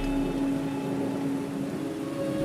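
Background music holding a steady low drone note that slowly fades, with a faint low rumble beneath it.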